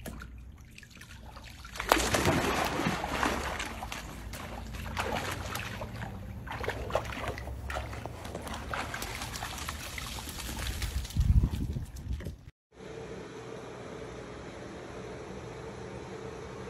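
A golden retriever tumbling into a swimming pool with a sudden loud splash about two seconds in, followed by water sloshing and splashing as the dog moves in the pool. The water sound cuts off abruptly about three seconds before the end, giving way to a steady low hum.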